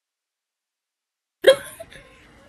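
Dead silence, then about one and a half seconds in a sudden short vocal sound, a single sharp voiced burst that quickly fades.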